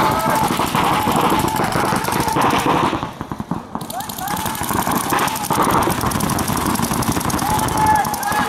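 Rapid paintball marker fire from several guns at once, a fast continuous rattle of shots, easing off briefly about three seconds in.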